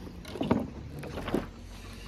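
Steady low rumble of a car heard from inside the cabin, with a faint hum and two brief soft sounds about half a second in and just past a second.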